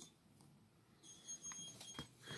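Near silence, with a few faint clicks in the second half as a plastic action figure is handled and posed.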